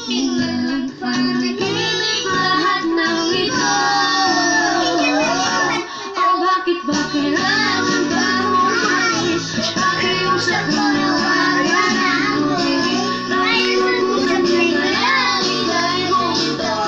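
A toddler singing into a corded handheld microphone over backing music, with a short drop in the backing about six seconds in.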